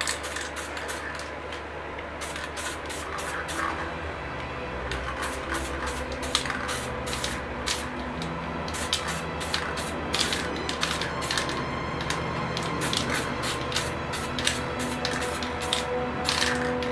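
Aerosol spray paint can sprayed in many short hissing bursts, coming in quick runs with brief pauses. Background music plays underneath.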